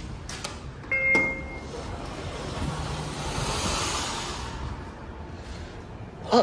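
Elevator call button clicked, then a short electronic beep about a second in, followed by the stainless-steel doors of a Schindler 3300 traction elevator sliding open, a swelling whoosh that peaks and fades over a few seconds.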